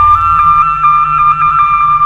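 Instrumental passage of a Khmer pop song: a flute holds one long high note with slight wavering over a soft bass line.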